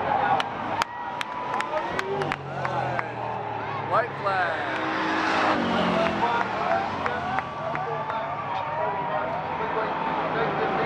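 Bomber-class stock car engine running as the car laps the track, heard under steady voices and chatter from spectators. A run of sharp clicks comes about twice a second in the first two seconds or so.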